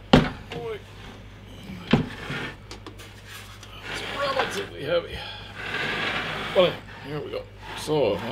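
The heavy case of an HP 1650A logic analyzer being turned around on a desk: two sharp knocks, one right at the start and one about two seconds in, then scraping as it slides across the tabletop, in two stretches from about four to six and a half seconds.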